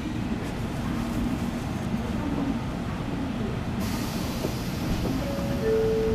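Steady low rumble inside a stopped Tokaido Shinkansen car standing at a platform, with a hiss coming in about four seconds in. Near the end a two-note chime begins, its tones alternating.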